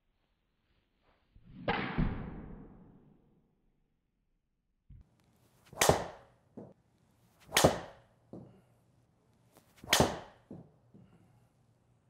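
Driver heads striking golf balls off a tee in an indoor hitting bay: four sharp strikes, one about two seconds in and three more in the second half roughly two seconds apart, each dying away quickly.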